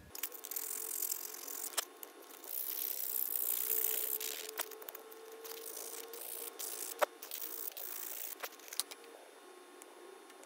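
Folded sandpaper rubbing over the hardened epoxy body of a small lure in scratchy hand strokes, loudest a few seconds in, with a few sharp ticks as the piece is handled.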